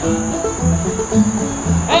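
Old-time string band playing an instrumental bar between sung lines: upright bass plucking alternating low notes under strummed acoustic guitars. Through it runs a steady high-pitched insect chorus from the summer woods. A singing voice comes in right at the end.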